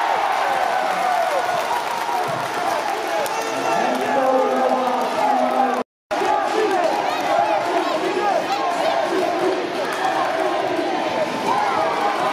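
Many voices of spectators and players in an indoor sports hall, shouting and cheering over one another during a youth futsal game. The sound drops out completely for a moment about halfway through.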